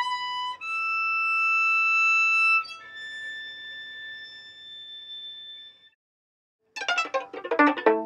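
Credits music: a violin playing slow, long held notes that step up, then down, and fade out about six seconds in. After a brief silence, a quick, busier run of many short notes starts near the end.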